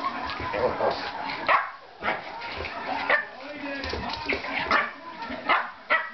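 Two dogs at play, a small long-haired dog and a large black-and-tan dog, giving several short play barks and yips as they wrestle.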